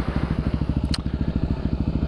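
Dirt bike engine running steadily at low revs, an even rapid putter. A single sharp click sounds about a second in.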